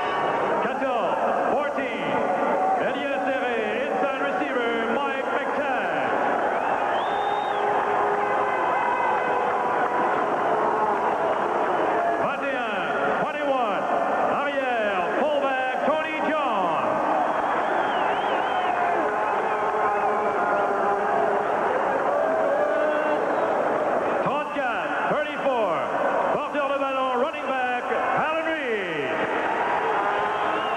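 Large stadium crowd of spectators, a steady dense babble of many voices.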